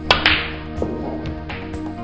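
A snooker cue tip striking the cue ball with a sharp click, a second click just after as the cue ball hits the black, and a softer knock about a second and a half in, all over background music.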